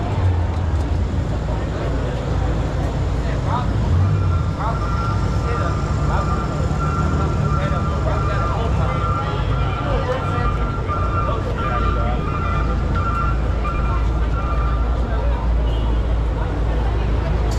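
Busy city street ambience: crowd chatter over a steady traffic rumble. From about four seconds in until near the end, a steady high tone made of two close pitches sounds over it.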